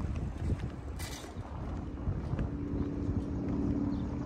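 Wind rumbling on the microphone, with a steady low hum that comes in about halfway through.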